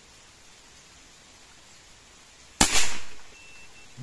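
A CBC B57 .177 (4.5 mm) PCP air rifle fires a single shot about two and a half seconds in: one sharp crack with a short decay. A brief faint high beep follows.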